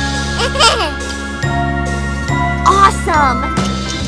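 Children's background music with jingly tones, and two brief gliding, swooping sounds about half a second and about three seconds in.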